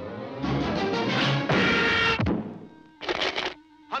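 Cartoon orchestral score playing a loud, busy passage that builds for about two seconds and ends in a falling pitch glide, followed by a short noisy burst about three seconds in.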